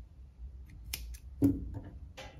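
Scissors snipping cotton yarn: a few sharp clicks of the blades, the loudest about a second and a half in.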